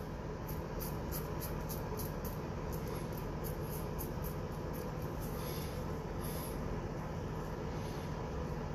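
Razor blade scraping lathered stubble on the upper lip in quick short strokes, about four a second, then slowing to a few strokes near the end.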